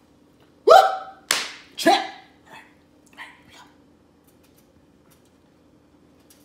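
A man's short wordless vocal outbursts: three loud ones about a second in, pitched, then breathy, then pitched again, followed by a few fainter ones, then quiet with a faint steady hum.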